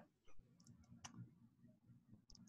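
Near silence: faint room tone with a few soft clicks, one about a third of a second in and a couple around a second in.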